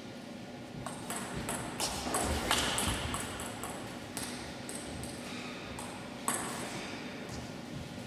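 Table tennis ball clicking off the bats and table in a rally: a quick run of sharp ticks, then a few scattered ones.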